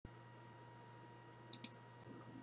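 Faint room tone with a steady electrical hum, then two quick sharp clicks about a second and a half in.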